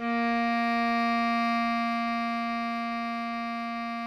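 Bass clarinet holding one long low note, the final whole note of the melody (written C, sounding B-flat), slowly growing quieter.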